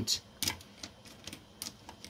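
Plastic markers clicking against one another as a hand picks through a row of them and lifts one out: a few light clicks.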